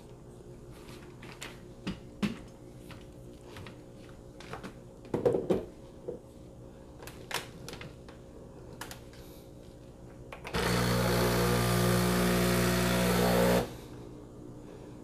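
Metal clinks and knocks of a stainless steel portafilter against the group head of a Breville Barista Express espresso machine as it is fitted and locked in. Near the end a motor inside the machine runs with a steady hum for about three seconds and cuts off sharply.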